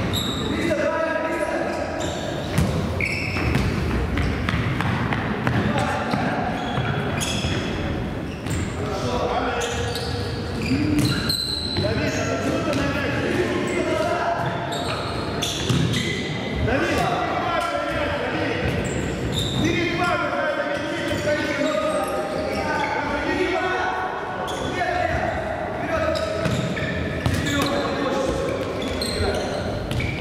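Children's futsal match in a large gym hall: players and onlookers calling out and shouting throughout, with repeated knocks of the ball being kicked and bouncing on the wooden floor.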